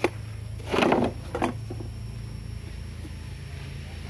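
A metal combination square and pencil handled on a plywood board: a sharp click at the start, then a short scraping rustle about a second in. A steady low hum runs underneath.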